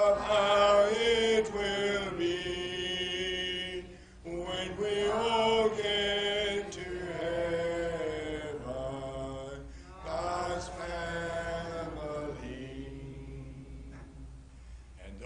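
Unaccompanied voices singing a hymn, a cappella congregational singing, in long held phrases with short pauses between lines.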